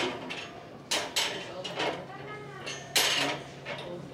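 Small household wares, ceramic dishes and a metal trivet, knocking and clattering as they are picked up and set back down on a wooden shelf: a few sharp clacks, the loudest about three seconds in.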